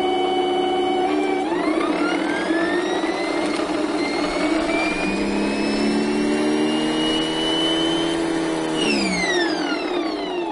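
GE starter-generator, a modified SepEx DC motor, whining as it spins. With its field coil disconnected it runs only on the leftover magnetism in the field shoes (field weakening), and the whine climbs steadily in pitch for several seconds as it speeds up with almost no torque. Near the end the field is put back on and the whine drops quickly as the motor is dragged back down, like regenerative braking.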